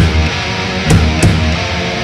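Heavy metal band playing: a distorted electric guitar riff over bass and drums, with heavy drum and cymbal hits at the start and about a second in.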